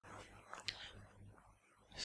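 Near silence: faint room tone with a low hum and one faint click about two-thirds of a second in.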